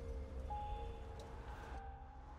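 Quiet, slow film-trailer music: a few long held notes over a steady low rumble, with a higher note coming in about half a second in.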